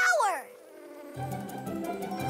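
Cartoon bee wings buzzing in a steady hum as two bees hover, under a falling pitched sweep that ends about half a second in. Soft music with low bass notes comes in just after a second.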